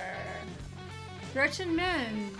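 Electric guitar music playing back from a video, with a voice rising over it about one and a half seconds in.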